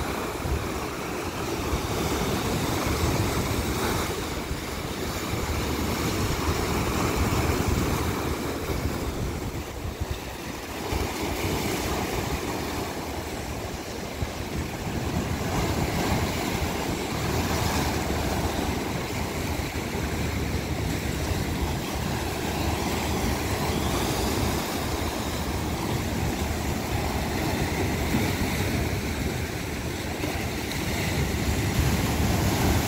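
Sea waves breaking and washing over a rocky shore, a continuous surf that swells and eases, dipping a little around ten seconds in. A steady low rumble of wind on the microphone runs beneath it.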